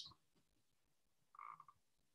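Near silence, with one faint, short tonal blip a little past halfway through.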